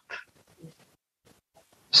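A pause in a man's speech: a brief soft hiss just after the start, a faint low blip, then near silence until his voice resumes right at the end.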